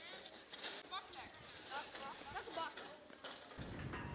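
Faint scraping and knocking of a snow shovel pushed over wet ice, spreading a fresh layer on a home-made ice rink, with faint distant voices. A low rumble comes in near the end.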